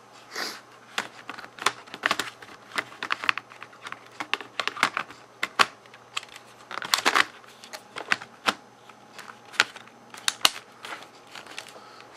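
Irregular sharp plastic clicks and taps, two or three a second, from hands pressing on and handling a Dell Latitude D430 laptop's case as it is put back together.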